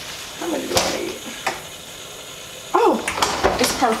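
Two sharp clicks a second or so apart as a boxed set of spice jars is handled, then a woman talking over the second half.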